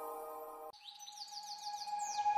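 Soft background music stops about a third of the way in. It is followed by a bird's quick run of short, high, falling chirps, about seven a second.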